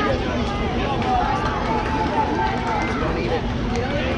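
Voices of people talking around a youth baseball field, overlapping and not clear enough to make out, over a steady low hum.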